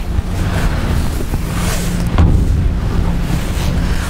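Wind buffeting the microphone: a loud, uneven low rumble with hiss above it.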